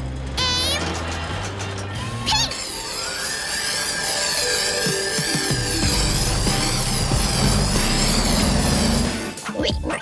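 Cartoon background music with animated sound effects: a short warbling zing about half a second in, then from about two and a half seconds a long whirring spray effect that swoops up and down in pitch until near the end, for the mixer truck spraying pink paint.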